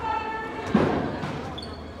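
A single basketball bounce on a hardwood gym floor about a second in, ringing briefly in the large gym, under a man's voice calling out a foul.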